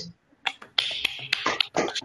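A scattering of uneven hand claps heard through video-call audio, starting about half a second in.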